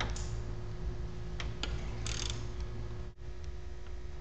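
A few sharp metal clicks from a socket wrench on an extension loosening the throttle body bolts, over a steady low hum. The sound drops out briefly a little after three seconds in.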